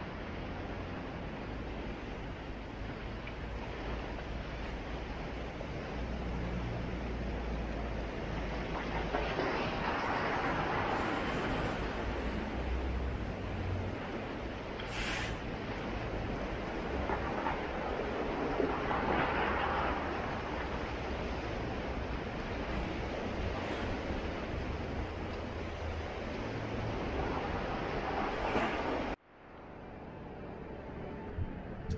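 Sea surf breaking and washing against a rocky shore: a steady rushing with three louder swells about nine seconds apart, over a low rumble. It cuts off suddenly just before the end.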